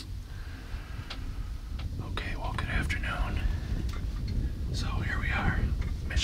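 A man whispering in two short stretches, over a low steady rumble.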